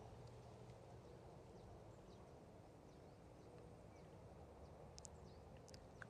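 Near silence: quiet outdoor ambience with a few faint, high bird chirps.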